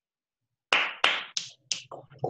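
Four sharp snaps made by hand in quick succession, about three a second, each dying away quickly, after a short silence.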